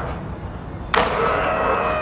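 Skateboard wheels rolling through a concrete bowl. About a second in there is a sharp clack of the board striking, followed by a steady high squeal that lasts about a second and drops in pitch as it fades.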